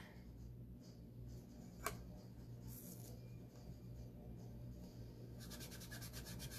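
Faint handling of a screen-print transfer being positioned and pressed down by hand on a wooden board: one sharp click about two seconds in, then quick rubbing strokes near the end, over a low steady hum.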